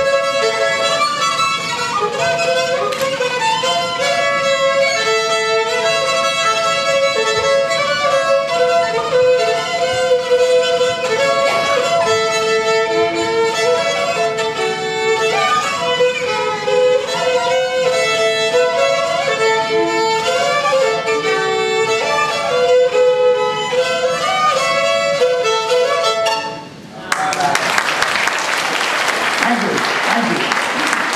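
Solo fiddle playing a brisk breakdown tune, the notes changing quickly. It stops near the end and audience applause follows.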